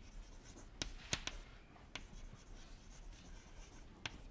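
Chalk writing on a blackboard: faint scratching with a few short, sharp taps as the letters are formed.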